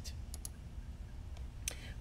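Computer mouse clicks: two quick clicks about a third of a second in and a single click near the end, over a low steady background hum.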